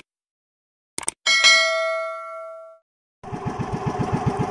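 Subscribe-button sound effect: two quick mouse clicks, then a bell chime that rings out and fades over about a second and a half. Near the end, a small outrigger boat engine starts in, running with a steady rapid chug.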